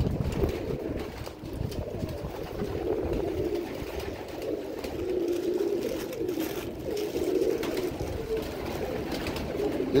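White pigeons in a wire cage cooing continuously in low, wavering, rolling calls, with faint clicks and rustles of tablets and a small plastic bag being handled.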